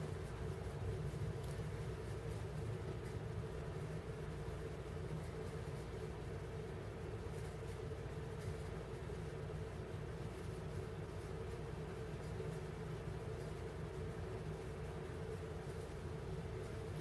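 Steady low background hum with a faint constant tone and no distinct events: room tone.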